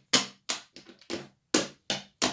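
Wooden draughts pieces tapped down on and lifted from a wooden board: a quick series of about six sharp clicks as a combination of captures is played out.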